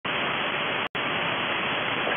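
Shortwave radio static from a receiver tuned to the UVB-76 frequency, 4625 kHz: a steady hiss that drops out for a split second about a second in.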